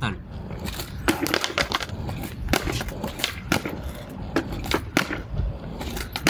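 Skateboard rolling on concrete, with a sharp clack of the deck roughly every second: tail pops and landings of ollie attempts off a skatepark bank.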